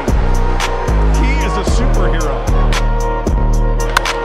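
Background music with a heavy bass line and a fast, steady beat.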